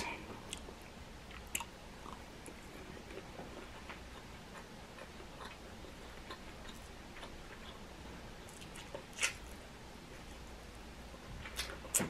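Faint chewing of food, with a few soft clicks scattered through.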